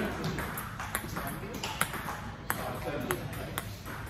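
Table tennis rally: the plastic ball clicking sharply off the paddles and the table in quick succession, with two louder clicks in the middle.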